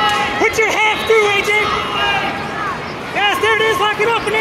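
Coaches and spectators shouting over one another at a wrestling bout, with crowd chatter behind; a run of short, quick repeated shouts comes near the end.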